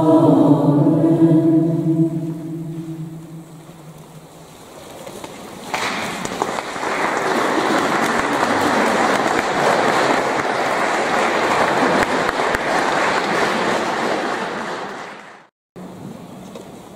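A mixed choir holds a final chord that dies away slowly in a reverberant church. About six seconds in, audience applause starts and runs steadily until it cuts off abruptly near the end.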